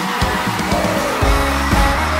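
Instrumental passage of a Vietnamese pop song with a steady beat; a deep bass comes in a little over a second in.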